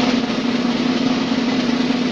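Snare drum roll sound effect, loud and even, cut in abruptly.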